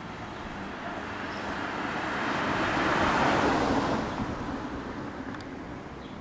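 A car passing close by on the street: road and engine noise swelling to a peak about three seconds in, then fading, over steady background traffic.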